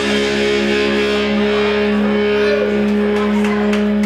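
A live rock band's closing chord held and ringing out: distorted electric guitars and bass sustaining one steady chord under a wash of cymbals, with a few cymbal hits near the end.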